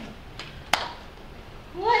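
A single sharp crack about three-quarters of a second in, after a fainter click, against the quiet of a large hall. A voice begins to speak at the very end.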